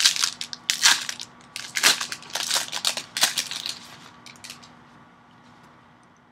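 Plastic wrapper of a Prizm basketball card pack being torn open and crinkled: a run of sharp crackles for about three seconds, then fading to quiet handling.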